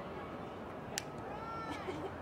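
A sharp click about a second in, then a high-pitched, drawn-out shout from a person on or beside the soccer field that rises and falls in pitch.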